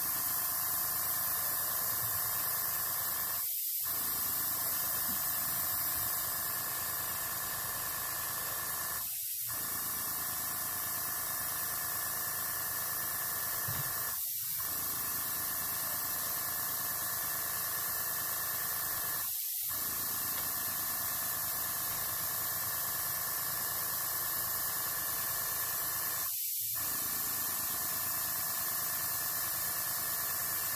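Steady hiss of compressed air from an airbrush blowing ink, fed by a compressor through an in-line moisture trap.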